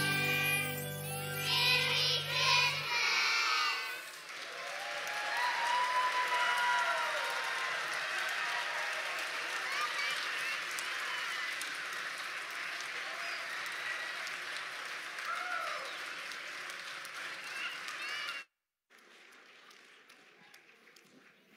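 A children's song ends on a held chord with young voices singing the last words, then the audience applauds with scattered cheers for about fourteen seconds. The applause cuts off suddenly near the end.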